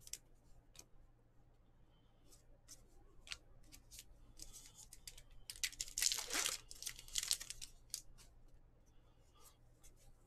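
A Topps baseball card pack's wrapper torn open by hand: a loud burst of tearing and crinkling about six seconds in, lasting some two seconds. Around it come light clicks and flicks of cards being handled.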